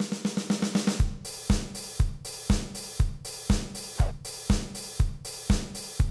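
A drum kit builds up. A fast run of snare strokes fills about the first second, then a steady four-on-the-floor kick drum lands about twice a second, with hi-hat and snare on top. A five-string electric bass plays along underneath.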